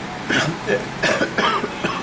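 A man coughing a few times in quick succession.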